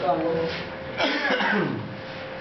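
Men's voices: a spoken word, then about a second in a short, harsh vocal outburst that falls in pitch, laughter-like or cough-like.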